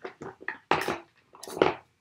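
Paper strip and craft scissors being handled on a tabletop: a run of short rustles, scrapes and clicks, loudest about two-thirds of a second in and again at about a second and a half.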